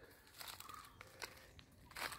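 Near silence, broken by a few faint crackles of footsteps on dry fallen leaves, about half a second in and again around one second in.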